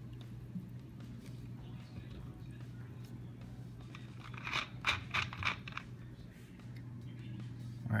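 Cola being poured from a plastic bottle into a plastic tub, heard as a soft, even rumble over a steady low hum. About halfway through comes a quick run of sharp crackles.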